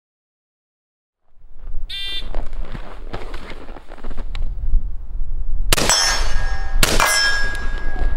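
Rifle fired twice about a second apart, each shot a sharp bang followed by metallic ringing. The shots come after a short ding and over a steady low rumble of wind on the microphone.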